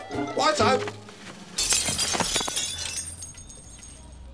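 A window pane smashing about one and a half seconds in, a sudden crash followed by glass pieces tinkling and dying away over about a second.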